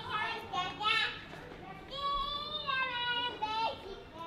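A child's voice: a few short vocal sounds, then one long drawn-out sung note that dips in pitch before it stops shortly before the end.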